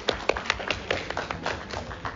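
A quick, irregular run of sharp taps, about a dozen in two seconds, in a meeting room.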